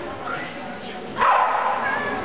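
A dog barking, with the loudest bark a little past the middle.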